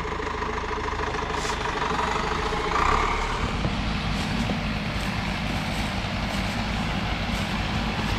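Zetor Proxima tractor's diesel engine running steadily some way off, a continuous low hum.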